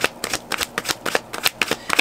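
A tarot deck being shuffled by hand: a rapid, irregular run of short card clicks.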